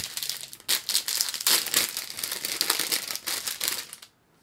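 Clear plastic bags holding model kit sprues crinkling as they are handled and pulled about, a dense crackling rustle with a short break about half a second in that cuts off suddenly near the end.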